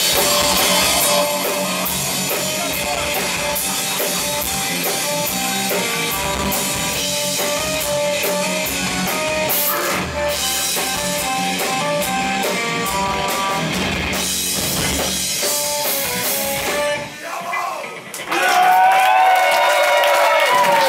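Live rock band with electric guitars, accordion and drum kit playing. About seventeen seconds in the music stops, and the crowd cheers and whoops.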